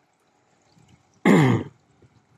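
A man clearing his throat once, a short voiced burst a little over a second in, falling in pitch.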